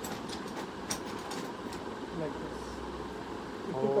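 Steady hum of a wall air conditioner in a small shop, with a run of faint light clicks in the first couple of seconds.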